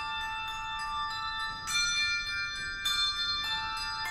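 Handbell choir playing: chords of handbells ring on, with fresh chords struck a little under two seconds in and again around three seconds in.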